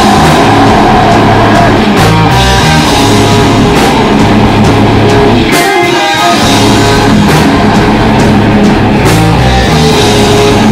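Live rock band playing loud: electric guitars through amp cabinets, with bass and a drum kit, heard very close and loud. The low end thins out briefly about six seconds in, then the full band comes back.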